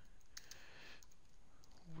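Computer keyboard being typed on: a few faint, separate keystroke clicks as a line of code is entered.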